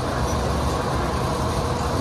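Steady background ambience: a low rumble and hiss with no distinct events.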